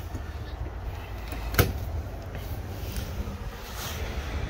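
A single sharp click about a second and a half in, the latch of a travel trailer's entry door being opened, over a steady low outdoor rumble.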